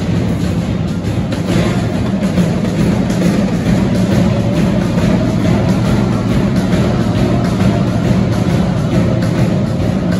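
Student band of saxophones, clarinets, trumpets and trombones playing loudly together, with snare drums, bass drums and cymbals keeping a steady beat.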